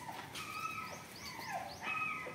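A German Shepherd whining in a high, thin, drawn-out tone that holds steady for over a second.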